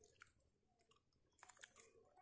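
Faint chewing of ripe jackfruit bulbs: a few soft wet clicks and smacks of the mouth, grouped a little more thickly near the end.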